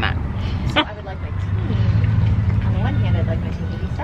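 Low, steady rumble of a motor vehicle's engine running on the street close by, growing louder about a second in, with people talking in the background.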